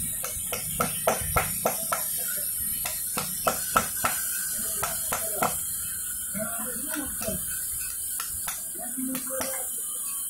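Hammer striking a steel chisel into stone: sharp taps about two to three a second for the first five seconds or so, then only now and then.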